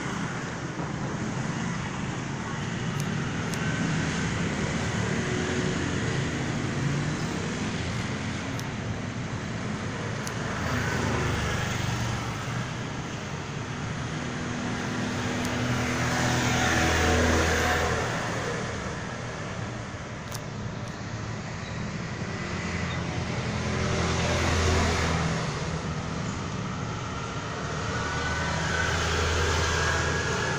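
Street traffic: passing vehicles swelling and fading several times, loudest about 17 seconds in and again around 25 seconds.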